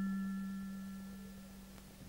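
A single struck bell-like chime, a low ringing tone with a few faint higher overtones, dying away steadily.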